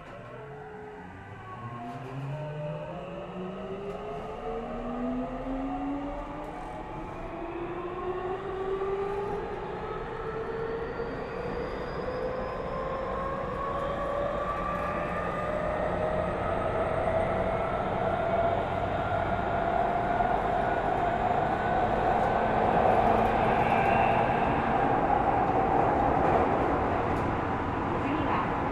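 A Tokyu 3000 series electric train's Toshiba IGBT VVVF inverter and traction motors pulling away and accelerating. Several tones rise in pitch together and level off near the end, while the rolling noise of the wheels on the rails grows steadily louder with speed.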